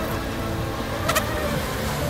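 Radio-controlled racing boats running at speed across the water, with their motors sounding steadily and one short, sharp sound about a second in.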